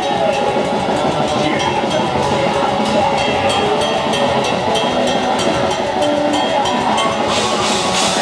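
Live heavy metal band playing: distorted electric guitar over fast, dense drum-kit strokes and cymbals, loud and continuous.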